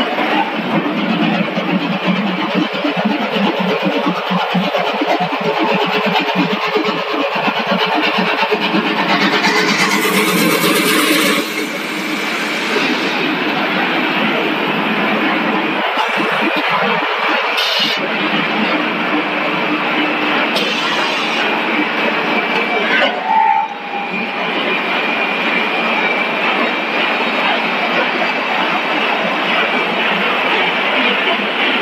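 Corn curl snack extrusion line running: motors, gearboxes and conveyors make a loud, continuous mechanical din with steady hums through it. A brief hiss cuts in about ten seconds in.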